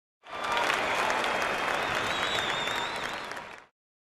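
Audience applause, many hands clapping, with a high wavering whistle over it about halfway through, fading out shortly before the end.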